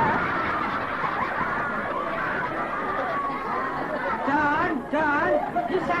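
Several people talking over one another and laughing, with a single voice standing out in the last two seconds.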